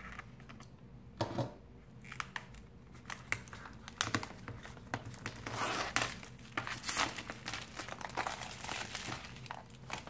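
Clear plastic shrink-wrap crinkling and crackling as it is peeled off a cardboard box, in irregular crackles that get busier about halfway through.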